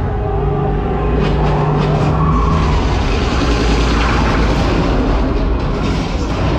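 Dark-ride film soundtrack of military trucks driving through a street: loud vehicle engine noise and a deep rumble under music, with a steady engine-like drone for the first couple of seconds.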